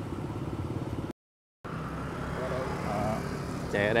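A small motorbike engine runs with a steady low pulsing amid street traffic. The sound cuts out completely for about half a second just after a second in, then the engine and road noise return.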